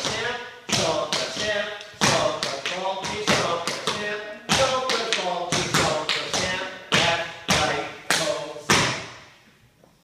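Tap shoes striking a wooden floor in a quick run of metal-plated taps, heel drops and heavier accented stamps, in an uneven dance rhythm that dies away near the end.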